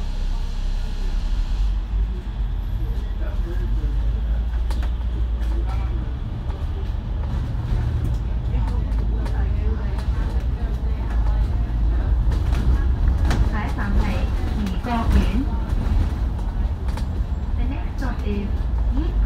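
Heard from on board a double-decker bus: a steady low rumble of the bus's diesel engine and road noise as it pulls away and drives along. Faint voices come through near the end.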